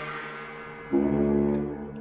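Saxophone holding long, low notes, with a bright ringing attack at the start and a drop to a deeper, louder note about a second in that then fades.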